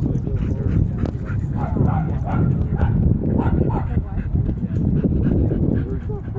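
Dogs barking in short calls, mostly around the middle, over a steady low rumble of wind on the microphone.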